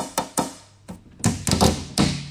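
Fingers drumming on a tabletop: a quick, uneven run of sharp taps and thunks, loudest in a cluster just past the middle.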